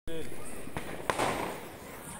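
Diwali ground firecracker going off and spraying sparks: a hiss that fades away, with two sharp cracks about a second in.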